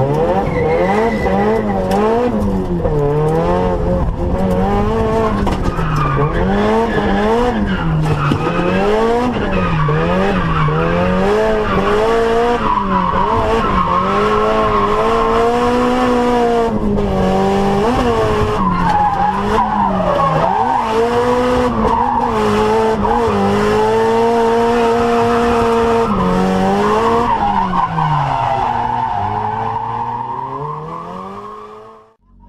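Drift car's engine heard from inside the cabin while drifting in a low gear. The revs rise and fall about once a second as the throttle is worked, then are held high and fairly steady with short dips, and fall near the end, with tyres skidding throughout.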